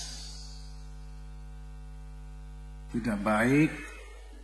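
Steady electrical mains hum from an amplified microphone and PA system, one low buzzing tone with its overtones, left bare in a pause of the voice. Near the end a man's voice comes in, intoning a word with a gliding, melodic pitch.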